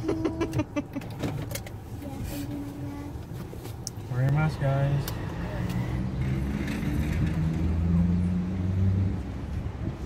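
Indistinct talking over car and car-park noise, with a few sharp clicks near the start.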